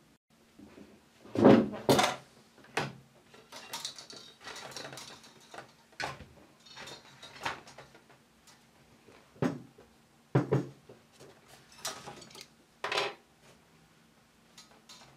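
Irregular knocks and clicks of hands working at a domestic knitting machine's metal needle bed and the knitted fabric on it, with a light rustle between strikes; the loudest knock comes about a second and a half in.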